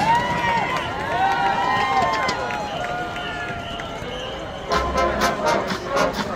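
Crowd voices and chatter from the spectators around the microphone. About three-quarters of the way in, the marching band's brass and drums strike up loudly and keep playing.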